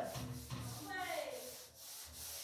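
A whiteboard duster rubbing back and forth across the board, wiping off marker writing; faint.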